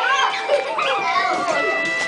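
Many young children's voices shouting and chattering at once as they play, over background music with a few held notes.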